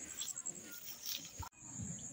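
Quiet field ambience: a steady high-pitched insect chorus with faint voices underneath, breaking off abruptly about one and a half seconds in and then returning.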